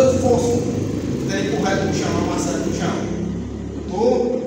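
A man speaking, talk that the transcript did not catch, over a steady low hum.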